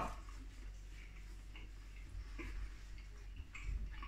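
A man chewing a mouthful of chilli dog with his mouth closed: a few faint, irregular clicks over a low steady hum.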